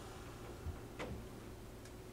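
A single sharp click about a second in, with a soft low thump just before it and a fainter tick near the end, over quiet room tone.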